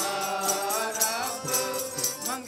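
Sikh Gurbani kirtan: men singing a shabad in chant-like style, accompanied by harmonium and tabla, with metal jingles keeping a steady beat.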